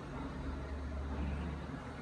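Steady low background hum in a room, with no distinct sound event.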